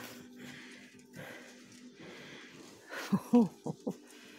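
Low indoor shop ambience with a faint steady hum that stops about two seconds in, then a short burst of a person's voice about three seconds in.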